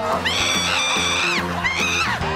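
A woman's high-pitched shriek of surprise, held about a second, followed near the end by a second shorter rising cry, over upbeat background music.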